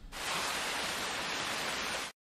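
Heavy rain pouring down from the film's soundtrack: a steady, even hiss that starts just after the beginning and cuts off abruptly at the end.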